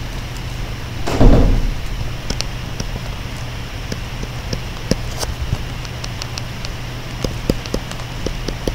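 Pen stylus tapping and sliding on a tablet screen as an equation is handwritten: a scatter of small sharp ticks over a steady low electrical hum, with a brief louder thump about a second in.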